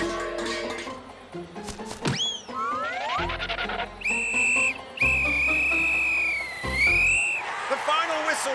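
Cartoon referee's whistle: a short blast about four seconds in, then a long blast that sags in pitch near its end, signalling the end of the match. Before it come a laugh and rising sound-effect glides over music.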